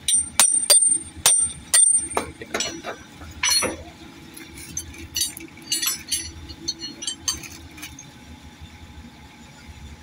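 Steel hand tools, a combination wrench and locking pliers, clinking against a steel diesel injector while its solenoid is worked loose: a quick run of sharp metallic clinks with a ringing note in the first two seconds, then lighter scattered clinks. A steady low hum runs underneath.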